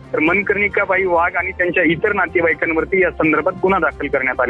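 Speech only: a man talking without pause over a telephone line, his voice thin and narrow, with a low music bed underneath.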